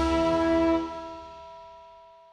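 Closing chord of a TV news programme's theme music, held and then fading out. The low end cuts off a little under a second in, and a few high tones ring on and die away.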